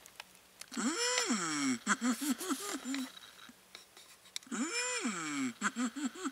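Sound effect from a green plastic toy coin bank, set off by coins dropped into it. It plays twice: each time a faint click, then one long call that rises and falls, then four or five short bouncing notes.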